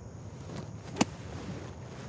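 Gap wedge striking the sand on a bunker shot: one sharp, short smack about a second in, over a faint outdoor background.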